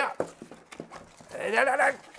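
Quiet rustling and clicking of cardboard packaging being pulled open, then a man's wordless vocal sound lasting about half a second near the end, louder than the handling noise.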